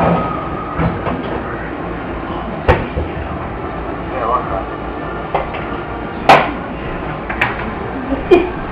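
Steady background hiss broken by four sharp knocks, the loudest a little past six seconds in, with faint murmured voices around the middle.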